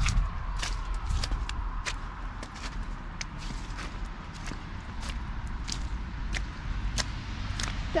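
Footsteps in snow and slush at an even walking pace, about three steps every two seconds.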